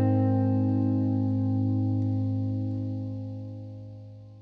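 Music: a single guitar chord with effects, held and ringing on, then fading away near the end.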